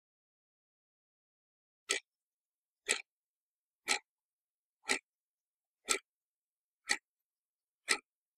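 Watch ticking, seven sharp ticks one a second, starting about two seconds in after silence.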